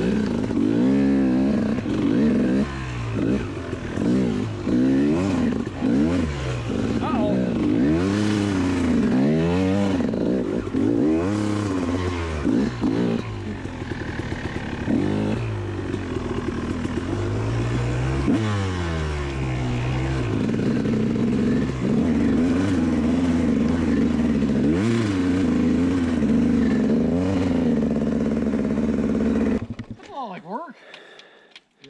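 KTM dirt bike engine riding snowy single track, the throttle opened and closed over and over so the engine note rises and falls about once a second. In the last third the revs hold steadier.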